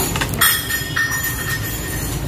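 Brass vessels knocking together and ringing with a thin, steady high metallic tone, struck twice about half a second apart, over the crinkle of the plastic bags they are wrapped in.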